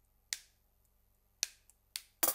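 Three short, sharp clicks of wooden drumsticks knocked together, with near silence between them.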